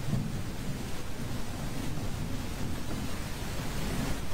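Steady, churning low rumble under an even hiss, with no distinct events.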